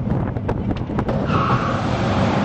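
Roller coaster car rumbling along its track with a few sharp knocks, then a steady high-pitched squeal starting a little past halfway as the brakes slow the train into the station.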